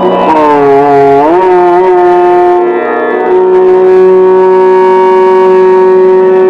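Violin playing Raag Shyam Kalyan in Indian classical style: a note slides down and swoops back up about a second in, then a long note is held steady through the second half, over a steady low drone.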